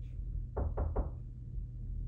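Three quick knocks in a row, about a quarter second apart, over a steady low hum.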